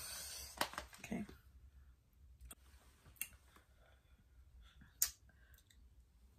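Thin clear plastic clamshell container crackling as its lid is handled, then a few sharp clicks of the plastic, the sharpest about five seconds in.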